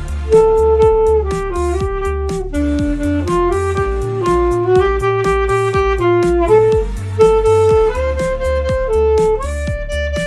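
Alto saxophone playing a Latin pop melody in held, stepping notes over a backing track with a steady beat and heavy bass. The saxophone comes in at the start.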